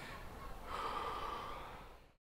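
A man breathing out heavily, a long noisy breath about a second in, over a low steady rumble of outdoor ambience that fades near the end.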